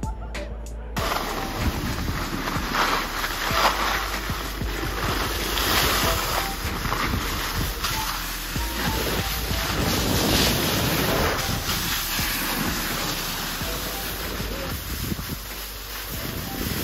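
Snowboard and skis sliding and scraping over packed snow, with wind buffeting the microphone, rising and falling in irregular swells. Music plays for about the first second before the noise starts.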